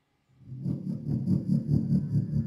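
Electronic drone soundscape of the kind made for TV background scoring, starting about a third of a second in as a low rumbling throb that pulses several times a second, with thin steady high tones above it.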